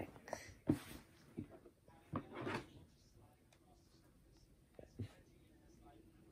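Fabric scissors cutting scrap cloth and the cloth being handled: a few scattered faint snips and rustles. A soft breathy sound comes about two and a half seconds in.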